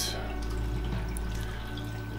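Water moving in a reef aquarium, a steady wash over a constant low hum, with faint background music.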